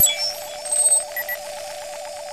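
Electronic scanner sound effect: a quick falling run of short high beeps, then a steady, fast-pulsing electronic tone like an alarm, with two more short beeps about a second in.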